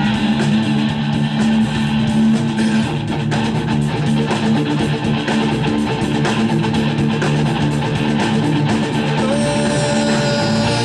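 Live rock band playing an instrumental passage: strummed electric guitar over bass guitar and drums.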